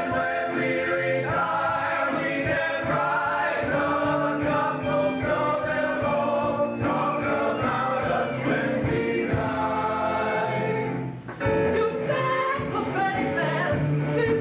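Stage musical number: a choir of voices singing with band accompaniment. The music drops briefly about three seconds before the end, then resumes.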